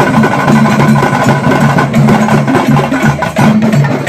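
Loud live folk procession music: drums beaten in a fast, dense rhythm with hand cymbals clashing, over held pitched notes that come and go.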